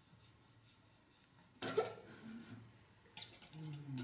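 Brief rustling and scraping of hands working a plastic propeller and a metal tightening rod on a quadcopter motor's prop nut, in two short bouts after a quiet start. A faint murmur of a voice comes in near the end.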